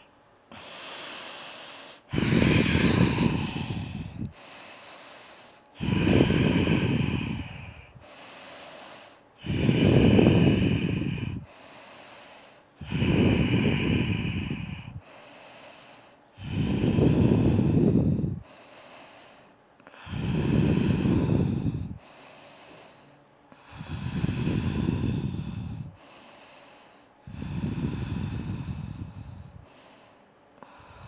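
A woman breathing slowly and audibly through the throat, in the ujjayi manner of a yoga practice, while holding a pose. There are about eight long, even breaths of around two seconds each, one every three and a half seconds, each followed by a softer, shorter breath.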